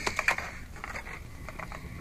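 Small, sharp clicks and taps of a crimped wire trace and its fittings being handled: a quick cluster at the start, then a few lighter, scattered clicks.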